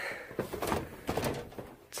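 An old wooden door with a brass knob being tried and shoved, giving several knocks and rattles against its frame; it does not open.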